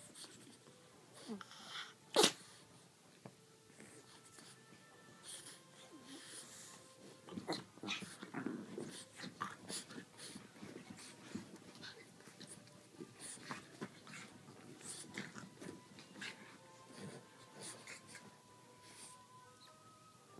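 A French bulldog puppy and a griffon play-fighting: scattered short snorts, wheezy breaths and scuffling throughout, with one sharp, much louder sound about two seconds in.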